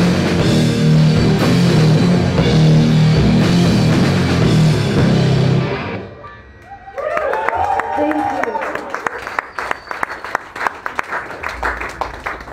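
Live rock band with distorted electric guitars and drum kit playing loud, then the song ends about halfway through. After a brief lull, a small audience claps and cheers.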